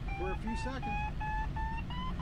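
Glider's audio variometer giving a quick run of short high beeps, about three to four a second, the pitch creeping slightly upward. The fast, high beeps signal strong lift in a thermal, a climb of about 800 feet a minute. Low airflow rush in the cockpit underneath.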